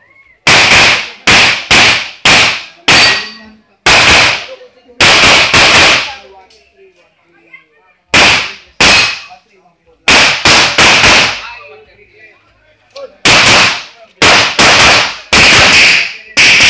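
Pistol shots fired in quick strings of two to five, some two dozen in all, with short pauses between strings; the longest pause comes about six seconds in.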